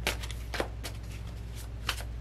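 A deck of tarot cards shuffled by hand, with a few short, crisp riffles of cards against each other: one at the start, one about half a second in and one near the end. A steady low hum runs underneath.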